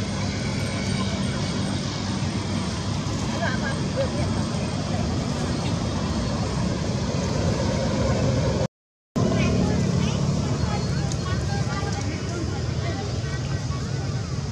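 Steady outdoor background rumble with faint, indistinct sounds over it. It drops out to silence for about half a second roughly nine seconds in.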